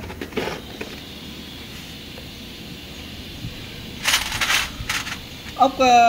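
Small steel parts of a Honda Wave S110 motorcycle clutch clinking as they are handled and a washer is fitted onto the clutch shaft, with a short burst of metallic rattling about four seconds in.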